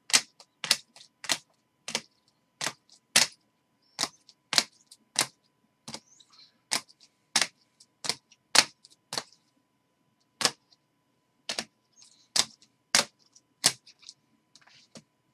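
Rigid plastic trading-card holders set down one after another on a table, a string of sharp clicks roughly every half second to second, with a short pause about two-thirds of the way through.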